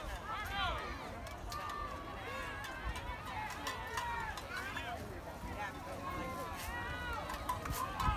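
Distant voices of players and spectators calling out around a youth football field, with a low rumble of wind on the microphone.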